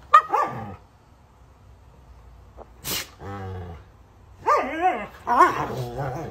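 Two Siberian huskies squabbling and vocalizing: short high yelps as it begins, a short sharp burst about three seconds in followed by a low grumble, then a run of rising-and-falling whining calls near the end.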